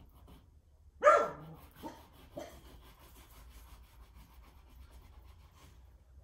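Oil paintstik rubbed in short strokes on unprimed rag paper, a soft dry scratching. About a second in there is a loud short call that falls in pitch, like a dog's bark or yelp, followed by two fainter ones.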